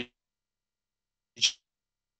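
A single short, sharp breath noise from the presenter about one and a half seconds in, amid otherwise near silence.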